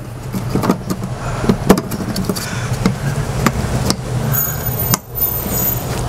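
Scattered plastic clicks and taps as a network cable is pushed up into a plastic junction box and the camera mount is handled, over a steady low mechanical hum.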